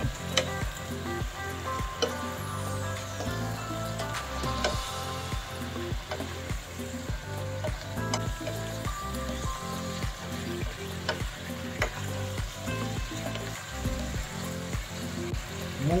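Shrimp, cucumber slices and bell pepper frying in a pan, a steady sizzle with a spoon stirring through them, under background music with a steady beat.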